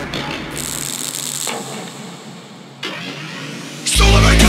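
Breakdown of a hardcore electronic track: noisy sampled effects with no beat, the deep bass dropping out about a second in.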